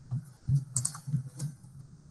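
Computer keyboard keys tapped, about five separate clicks in under two seconds, picked up through a video-call microphone.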